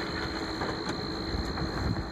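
Vehicle engine idling, heard from inside the cabin as a steady low rumble with a faint steady hum.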